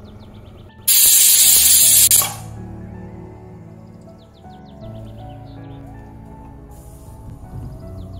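Stovetop aluminium pressure cooker's weight valve lifting and venting steam in one loud hiss, about a second in, lasting about a second and a half: the cooker has come up to pressure. Background music plays under it.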